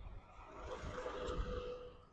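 A pickup truck passing close by from behind: its engine and tyre noise swell to a peak about a second and a half in, then begin to fade as it pulls away.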